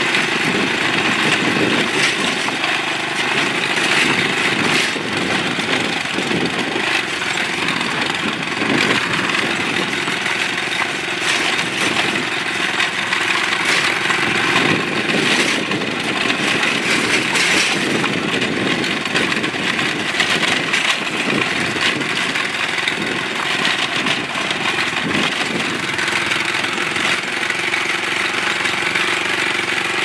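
Motor vehicle engine running steadily on the move, heard from on board, with tyre and wind noise from driving over a gravel road.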